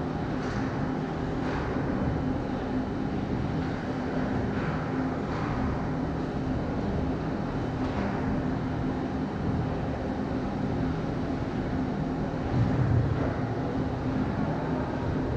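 Steady low hum and rumble of ice-arena machinery, with a few fixed low tones. Faint short scrapes of skates on ice come now and then, and a brief louder low thump comes near the end.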